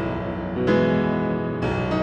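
Background piano music: slow, sustained chords, with a new chord struck about once a second.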